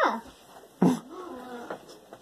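A dog whining in a high pitch. A rising whine at the start, then a sudden yelp about a second in that drops into a held whine.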